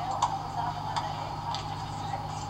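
Tennis balls being struck and bouncing during play: three short sharp knocks roughly half a second to a second apart, over a steady low hum.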